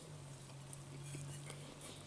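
A man chewing a mouthful of ham and egg sandwich: soft, scattered wet mouth clicks, over a steady low hum.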